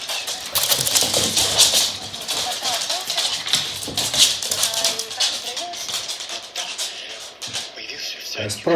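Background music over rapid clicking and scratching of two Pembroke Welsh corgis' claws on a laminate floor as they play and scramble.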